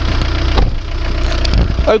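Skoda Octavia 1.9 TDI turbo-diesel engine idling steadily with a low, even diesel clatter.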